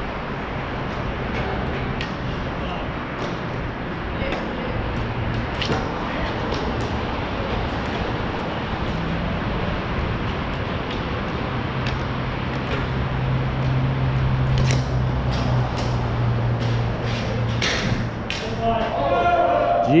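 Ball hockey play: scattered sharp clacks of sticks hitting the ball and the ball striking the boards, coming more often in the second half, over a steady rushing noise with a low hum.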